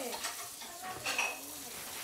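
Washing-up at a kitchen sink: tap water running steadily, with small clinks of dishes and utensils.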